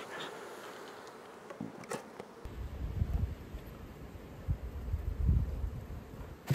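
Honey bees buzzing around an open hive, a steady hum. From about two and a half seconds in, a low rumble joins it underneath.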